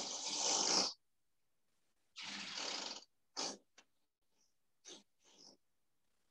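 A woman's stifled, breathy laughter into a headset microphone: a long exhale at the start, another about two seconds in, then a few short puffs of breath that cut in and out.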